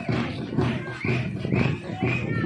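Drums beating a quick, even rhythm of about three strokes a second amid crowd noise, with short rising high-pitched calls or whistles over it.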